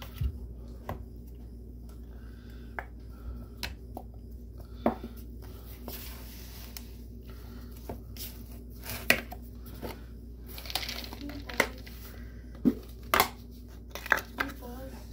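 Shredded carrots tipped from a glass bowl into a plastic mixing bowl, then hands squishing and mixing them into crumbly carrot cake batter, with scattered light knocks of bowl and utensils. The sharpest knock comes about nine seconds in.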